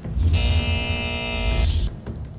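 Electronic buzzer sound effect, one steady tone about a second and a half long over a low rumble, marking the end of a speaker's timed turn.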